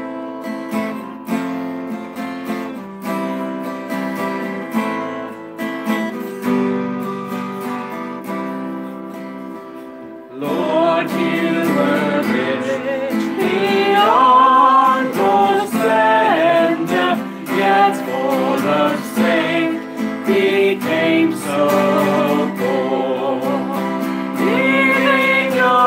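Acoustic guitar strummed on its own for about ten seconds between verses, then voices singing a Christmas hymn come in over the guitar, louder than the guitar alone.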